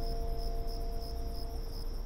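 A cricket chirping in an even pulsing rhythm, about three chirps a second. Two long held notes of soft music die away partway through.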